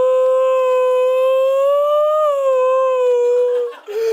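A woman's voice holding one long, loud sung "oh" note at a steady pitch. The note rises slightly about two seconds in, then breaks off shortly before the end.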